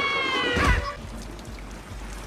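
An animated character's high-pitched, drawn-out scream that sags a little in pitch and cuts off under a second in, followed by a quieter stretch of film soundtrack.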